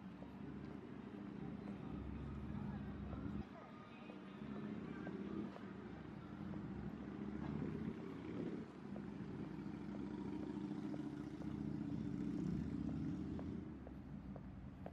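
City street ambience: a steady hum of road traffic, with passers-by talking and faint footsteps on the paving.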